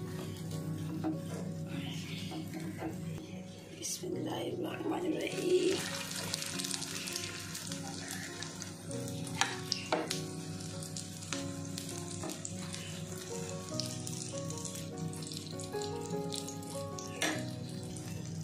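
Egg-dipped bread slices frying in oil on a flat iron tawa: a steady sizzle that gets stronger about five seconds in, with a few sharp clicks. Background music plays over it.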